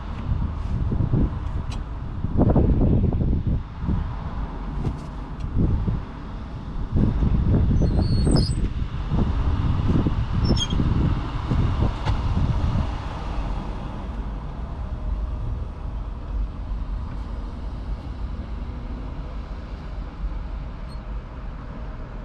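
Low vehicle engine rumble that swells and falls unevenly for the first half, with a few faint high squeaks in the middle, then settles to a steadier, quieter hum.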